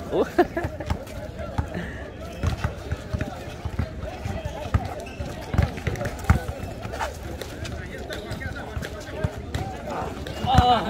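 Basketball bouncing on an asphalt court, irregular dribbles and thumps, with players' voices and a laugh at the start.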